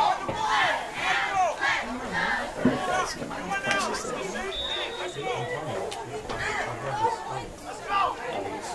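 Spectators at a football game chattering and shouting, with a run of short, regularly spaced shouted calls in the first couple of seconds, then mixed crowd voices.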